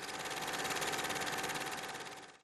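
A small machine running with a steady whirr, pulsing fast and evenly, with a faint thin hum on top.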